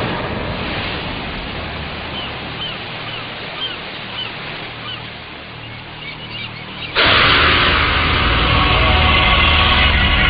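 Steady wash of sea surf with a bird giving a run of short high calls, about two a second. About seven seconds in, loud film-song music cuts in suddenly.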